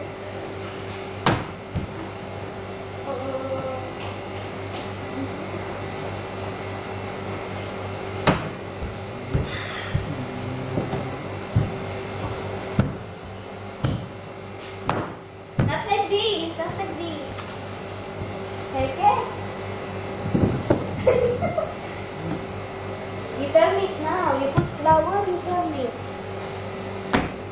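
Dough being rolled out on a floured worktable: scattered sharp knocks of wooden rolling pins and a steel ring cutter against the table, over a steady machine hum. Indistinct voices murmur in the background in the second half.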